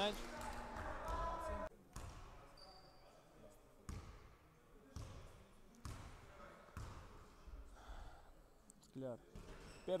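A basketball bouncing on a hardwood gym floor, single bounces roughly a second apart, as a player dribbles at the free-throw line before a shot.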